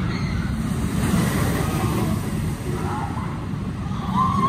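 Steel roller coaster train running along its track overhead: a steady low rumbling roar that grows a little louder about a second in.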